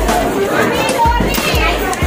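Market chatter: several people talking around a fish stall over background music with a steady bass beat.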